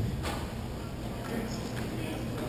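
Echoing hall ambience of a hockey game: distant players' voices and skate noise, with a sharp clack of a stick or puck about a quarter second in.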